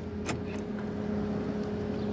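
A car heard from inside while driving slowly: a steady engine and road hum, with a faint click about a third of a second in.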